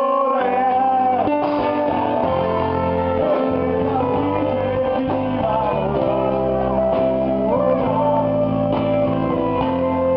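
Small rock band playing live: a man singing in Italian over guitar and electric bass.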